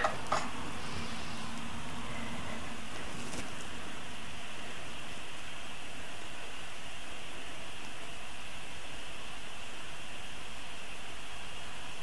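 Steady hiss of background noise at an even level throughout, with a small click just after the start and a faint low hum in the first couple of seconds.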